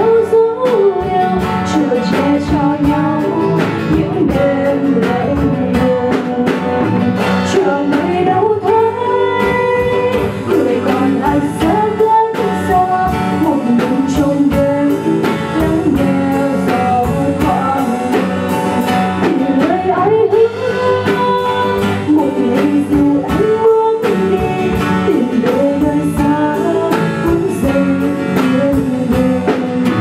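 Live band playing a slow Vietnamese ballad: a woman singing over acoustic guitar, keyboard and drums.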